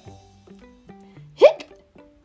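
A single loud, sharp 'hic!' hiccup about a second and a half in, over quiet background music of short held notes.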